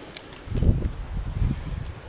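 Wind buffeting the microphone in low rumbling gusts, with a faint clink of climbing gear at the harness just before.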